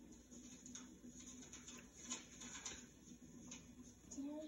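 Near silence: faint rustling and a few light ticks of paper book pages being turned, over a low steady hum, heard as an old home video played back through a television speaker.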